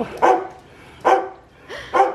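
A dog barking three times, short loud barks about a second apart.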